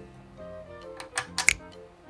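Background music, with three or four quick wooden clicks about a second and a half in as a wooden number tile is set into its slot in a wooden counting puzzle board.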